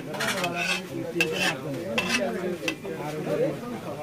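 Perforated metal ladle clinking and scraping against a steel frying pan as aloo chops are scooped out of hot oil, with several sharp clinks over the sizzle of the frying oil.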